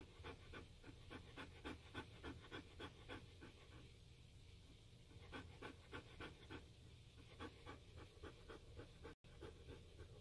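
A dog panting softly and rapidly, about four or five breaths a second, in runs of a few seconds with short pauses between them.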